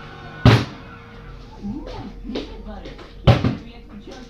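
Plastic water bottle being flipped and striking a hard surface with a sharp thud, twice: about half a second in and again near the end.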